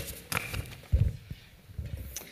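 A few knocks and low thumps from the lectern and its microphone being handled, three or so spaced across the moment.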